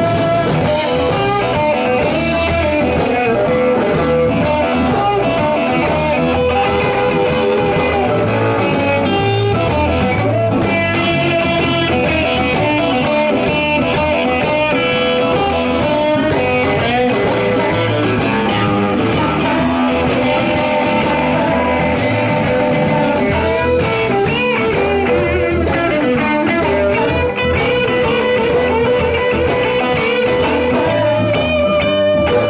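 Live blues band playing, led by a red Telecaster-style electric guitar whose notes bend and waver with vibrato over a steady drum beat.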